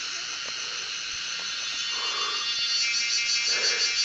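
Dense, steady chorus of insects in forest, high-pitched, with a pulsing call that grows louder near the end and a couple of fainter lower calls.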